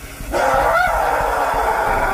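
A man screaming in pain from a chemical burn to his face: one long, strained cry that starts a moment in and is held for nearly two seconds, wavering once early on.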